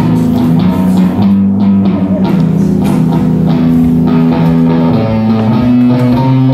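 Electric guitar played live through an amp: rock music with held chords that change every second or few.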